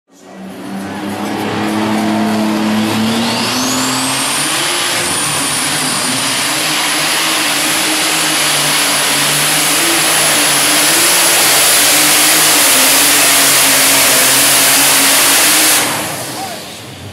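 John Deere superstock pulling tractor at full power under load, pulling the weight sled. The loud engine carries a high turbo whine that rises over the first few seconds and then holds steady, and the sound stops abruptly at the end.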